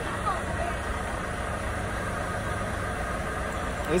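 Steady low rumble of a vehicle engine idling, even and unchanging throughout.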